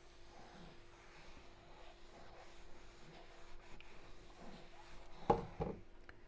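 Steam iron sliding back and forth over a fabric circle, pressing from the right side to fuse the foam backing: faint, soft rubbing, with a faint steady hum underneath.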